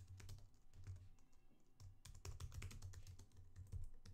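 Typing on a computer keyboard: a quick, faint run of key clicks, coming thicker from about halfway.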